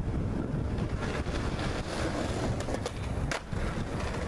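Skateboard wheels rolling on brick pavers, with wind on the microphone, during an ollie down a three-stair. A few sharp clacks come in the second half, the loudest a little after three seconds in.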